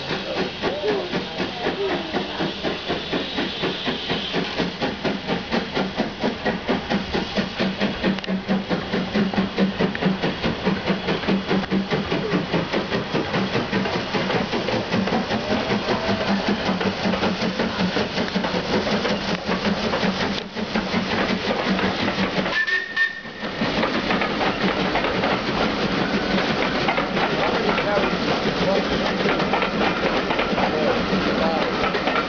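Steam locomotive working a passenger train away from the station, its exhaust beating in a steady rhythm over a continuous hiss, with the coaches rolling past behind it. The beat briefly drops out a little after two-thirds of the way through.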